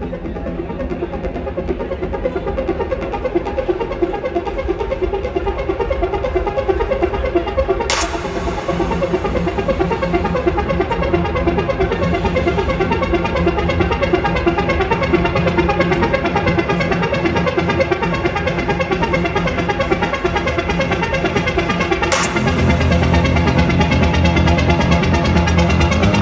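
Acid trance dance music played loud over a club sound system, heard from within the crowd. A deep bass line comes in about three-quarters of the way through, and the music gets louder.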